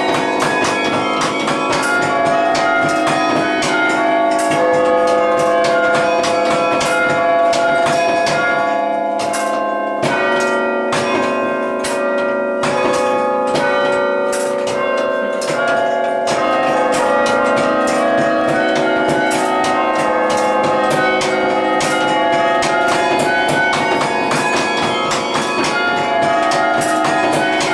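A 23-bell carillon playing a melody. Many bell notes ring and overlap with long decays, and each note is played with a sharp clack of the wooden baton keys and their linkage at the console.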